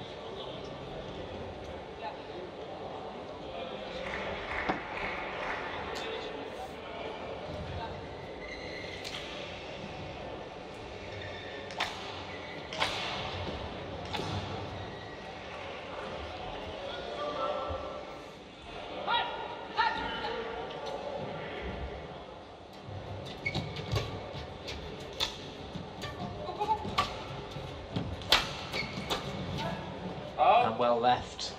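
Doubles badminton in an indoor hall: rackets striking the shuttlecock in a rally, heard as sharp clicks that come thick and fast in the last few seconds, with shoe squeaks on the court over the hall's background noise.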